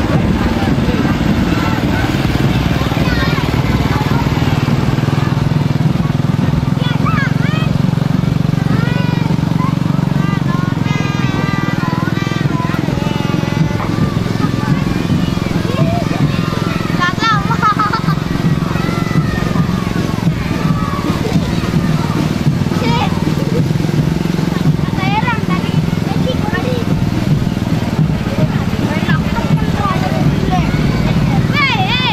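A small motorcycle-type engine running steadily, pulling a procession float, under the overlapping chatter and calls of children's voices.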